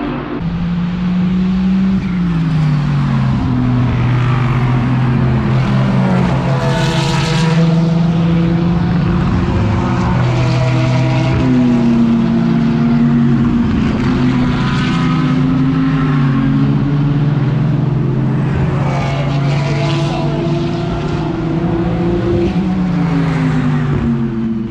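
GT3 race cars' engines at racing speed going past, several at once. The engine pitch steps up and down through gear changes, loud and continuous.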